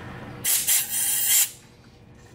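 Compressed-air blow gun on an air hose blowing into a car's fuel line: about a second of loud hiss that cuts off sharply, flushing old gas and debris out of the line.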